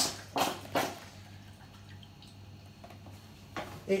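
Apple juice pouring from a carton into a glass demijohn, splashing into a foamy head in a couple of surges. The pour stops about a second in, leaving a faint steady hum.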